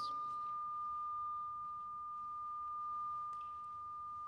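A steady, high-pitched pure tone held at one pitch, over faint room tone.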